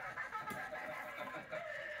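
A woman laughing heartily in repeated bursts, with a man laughing along, from a TV sitcom heard through the television's speaker.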